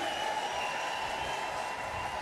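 Faint, steady applause and crowd noise from a congregation in a large hall, with a few voices mixed in.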